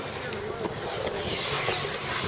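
Wind buffeting the camera microphone: a rushing noise that swells in the second half, with faint voices behind it.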